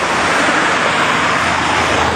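A car driving past close by: a rush of tyre and engine noise that swells and is fullest about a second and a half in.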